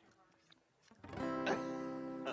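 Acoustic guitar strummed through the PA, starting a chord about a second in that rings on steadily, as the worship song resumes for another verse.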